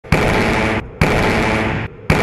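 Two blasts from electromagnetic railgun test shots, about a second apart, each starting with a sharp crack and running on for under a second before cutting off abruptly.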